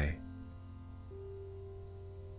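Soft ambient background music of long held notes over a low drone, a new higher note coming in about a second in, with a faint, high, steady chirring of crickets over it.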